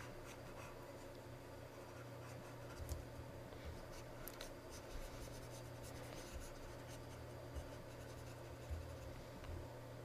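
Faint, irregular scratching and light taps from brushstrokes being drawn with a hand-held pointing device on a desk, over a steady low electrical hum.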